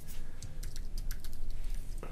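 Typing on a computer keyboard: a quick run of keystroke clicks as a short word is typed.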